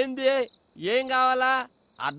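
Film dialogue: a voice saying two drawn-out phrases, with crickets chirring steadily in the background.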